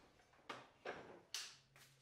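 Near silence with three faint, short handling noises about half a second apart, as a black plastic chip guard is lifted from the cold saw and set down on a steel table.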